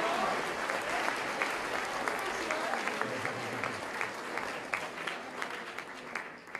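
Audience applauding, a steady patter of many hands clapping that slowly fades.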